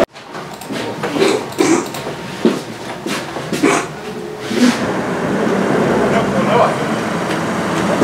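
Indistinct voices over steady background noise, starting right after an abrupt cut; the voices fade out in the second half and leave only the noise.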